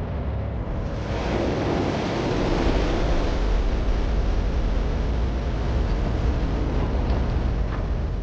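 Fast-flowing river water rushing and churning in a steady wash of noise that grows fuller about a second in.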